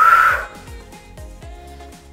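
Workout background music with a steady drum beat, about two and a half beats a second. Right at the start there is a short loud cry from a woman, held on one pitch for about half a second, an effortful call during the push-up set.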